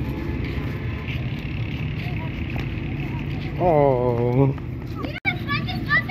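A steady low rumble throughout, with a man's drawn-out vocal call about four seconds in and a child's high-pitched squeals near the end.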